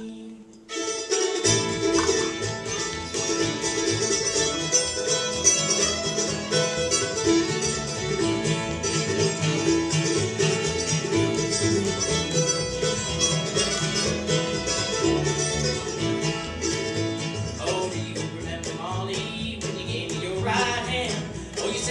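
An acoustic bluegrass string band of fiddle, mandolin, upright bass and acoustic guitar plays an instrumental passage. After a brief lull, the band comes in under a second in, and the bass joins about a second later.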